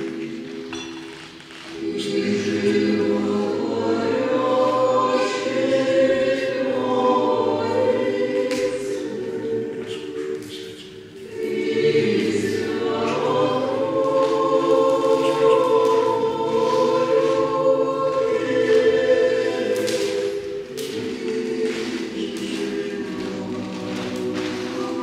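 A choir singing a hymn in several voices, in long held phrases with a brief break about a second and a half in and another about eleven seconds in.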